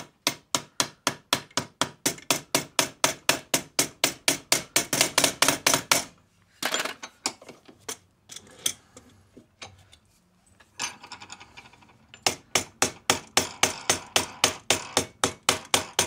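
Soft nylon-faced hammer striking annealed copper clamped to a former, flanging the plate over around the edge of a hole. Quick blows come about five a second for the first six seconds, then a few seconds of scattered lighter knocks and handling, then another quick run of blows near the end.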